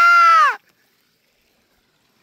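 A person's brief high-pitched excited squeal, held steady and then falling in pitch as it ends about half a second in; after it the sound cuts out completely.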